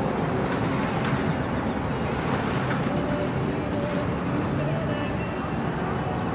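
Steady city ambience: the hum of road traffic mixed with the voices of people talking.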